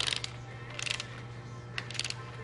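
Long-handled socket ratchet clicking in three short quick runs about a second apart as it is swung back and forth, snugging down the rocker shaft hold-down bolts on a Detroit Diesel Series 60 cylinder head.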